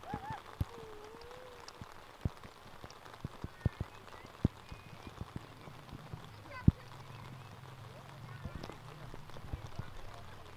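Outdoor youth soccer game: scattered irregular thumps and knocks of the ball being kicked and players running on grass, the loudest, sharpest knock about two-thirds of the way through. Faint, distant shouts of children and adults on the field.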